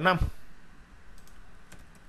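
A few faint computer keyboard key clicks, typing a short entry, in the second half after a man's voice trails off at the start.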